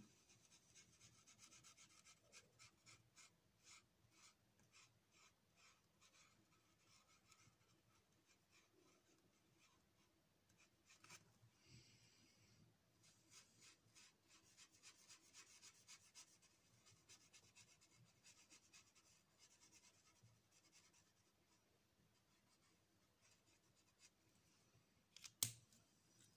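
Faint scratching of a felt-tip marker drawing lines on paper in short, irregular strokes, with a sharp click near the end.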